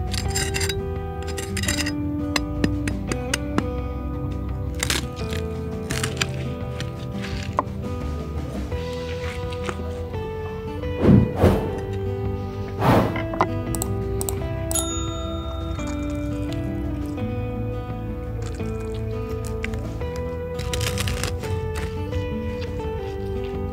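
Background music with steady notes, over which a large knife crunches through crisp roast pork crackling and knocks on a wooden cutting board in scattered sharp clicks. The two loudest knocks come about eleven and thirteen seconds in.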